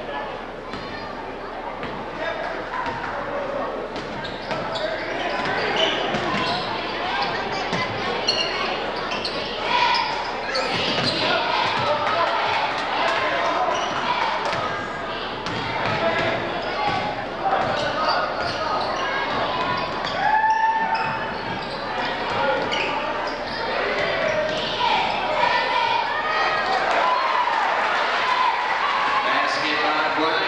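A basketball being dribbled on a hardwood gym floor during play, amid crowd chatter and shouts in a large gym.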